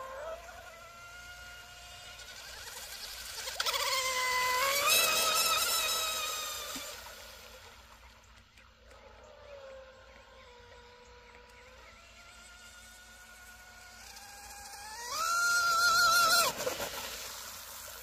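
High-revving brushless electric motor and propeller of an RC outrigger boat whining at full throttle, a 4480 kV motor meant for 3S being run on a 4S pack. The whine grows louder and rises in pitch twice as the boat passes, about four seconds in and again near the end, and stays faint in between while the boat is farther off.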